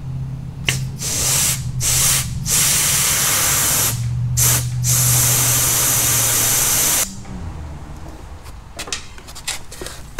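Compressed air hissing as it is blown through a car lift's hydraulic hose to purge debris from the line: several short blasts, then a long one that cuts off suddenly about seven seconds in.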